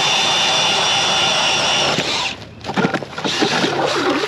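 A small vehicle engine running steadily with a high whine as the machine creeps forward a short way, cutting back about two seconds in; scattered knocks and scrapes follow.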